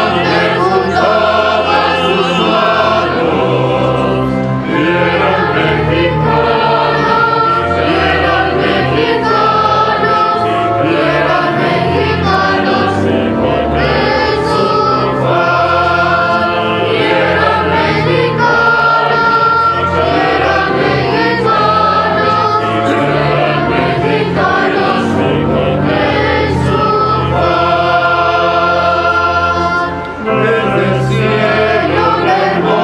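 A choir singing a hymn, the entrance hymn before a Catholic Mass begins, over steady sustained low accompaniment.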